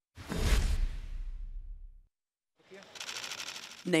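A news transition effect: a sudden deep boom with a whoosh that fades away over about two seconds. After a short gap, a fast, even run of clicks builds up near the end.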